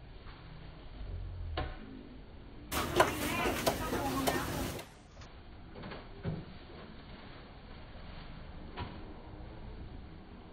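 Market-stall sounds: a low background with a few scattered knocks and clatters. About three seconds in there is a louder stretch of people talking for around two seconds.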